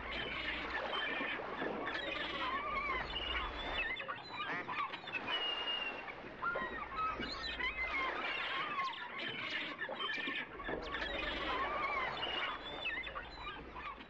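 A dense chorus of many birds calling over one another, with many wavy, rising-and-falling calls overlapping without a break.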